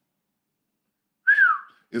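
After about a second of silence, a single short whistled note that rises briefly and then glides down in pitch.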